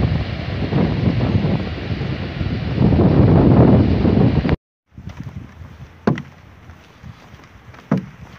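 Strong wind buffeting the camera microphone as a loud, uneven rumble. It cuts off abruptly, then gives way to quieter outdoor noise while walking, with two sharp knocks about two seconds apart.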